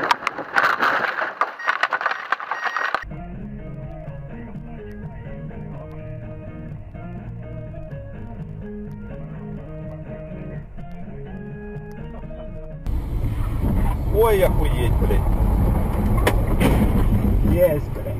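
Dashcam audio in three parts. First, about three seconds of loud, rough noise with sharp knocks. Then thin-sounding music with a steady run of notes until about thirteen seconds in. Then loud low vehicle rumble with raised voices over it.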